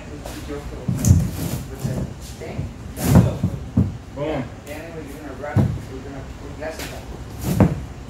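A large fiberglass deck panel knocks and thuds against a skiff hull as it is lowered and shifted into place. There are four sharp knocks, about two seconds apart.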